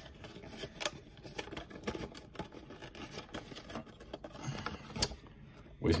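Cardboard trading-card blaster box being handled and worked open: faint scraping and rustling with scattered small clicks and taps.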